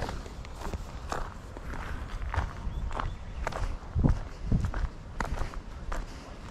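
Footsteps walking at a steady pace of about two steps a second on a dirt path strewn with pine needles and grit. Two heavier low thumps come about four seconds in.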